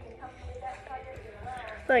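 Faint voices in the room, then a child's voice comes in loudly near the end.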